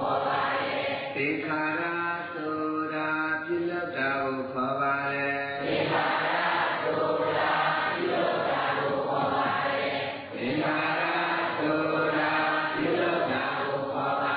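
Buddhist devotional chanting: voices holding long, sustained notes that step in pitch, with a short breath-like dip about ten seconds in.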